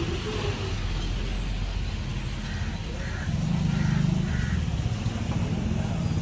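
A motor vehicle engine running with a low rumble that grows louder about three seconds in, with four short, evenly spaced high beeps about 0.6 s apart.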